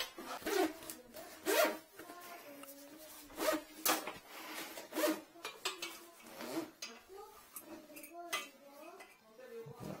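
Scattered clicks and knocks of an aluminium-framed equipment case being opened and a drain inspection camera's monitor being handled and set up, with faint voices in the background.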